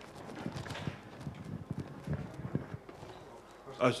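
Irregular light knocks and taps from a handheld microphone being handled as it is passed to an audience member, with faint talk in the room.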